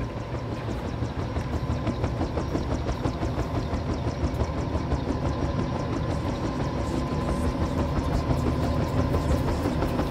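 A steady low mechanical rumble like a running engine, with a fast, regular ticking over it that grows denser and slightly louder toward the end.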